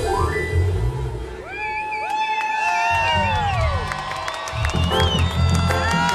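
Live reggae band playing, with the bass dropping out for about three seconds while the crowd cheers and whoops, then the full band comes back in near the end.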